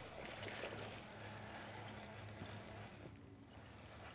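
Faint water lapping with a low steady hum underneath that fades out about three seconds in.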